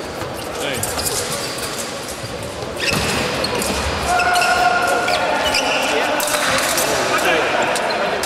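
Fencers' footwork on a wooden sports-hall floor: repeated sharp knocks and thuds of feet stamping and landing, with brief shoe squeaks, growing louder and busier about three seconds in as the bout turns to an attack.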